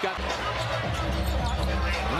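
Basketball game sound from the arena: court and crowd noise under music with a steady low bass that comes in just after the start.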